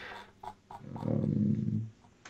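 Two soft clicks, then a low, drawn-out vocal sound lasting about a second.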